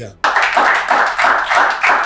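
A small audience clapping: many quick, overlapping hand claps starting just after the start and going on steadily.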